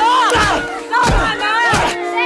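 Several voices shouting and yelling over one another during a scuffle in an old TV drama scene played back, with a steady held music tone underneath.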